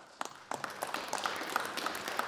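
Audience of members clapping: a few scattered claps, then a dense round of applause from about half a second in.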